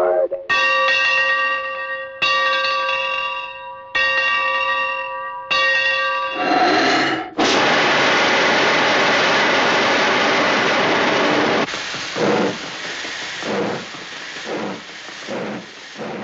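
A large bell struck four times, each strike ringing on and fading, then a loud steady steam hiss for about four seconds that drops to a softer hiss with irregular puffs: sound effects for a cartoon steam locomotive.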